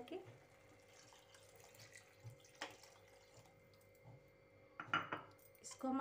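A bowl of water poured into a metal kadhai of hot masala gravy, a quiet pour, followed near the end by a few clinks of a metal spatula against the pan as stirring begins.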